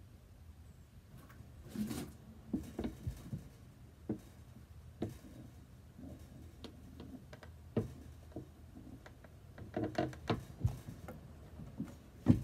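Bench-mounted hand lever shear working thin copper sheet: scattered short clicks and clunks of the sheet and the blade. They bunch about two to three seconds in and again around ten seconds in.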